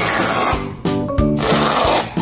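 Background music plays throughout. An aerosol can of whipped cream hisses in two short spurts, at the start and again near the end, as the cream is sprayed onto a cake.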